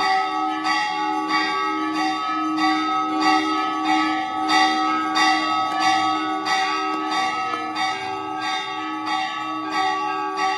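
Temple bells rung continuously for the aarti, struck about twice a second. Several bell tones overlap and ring on between strokes.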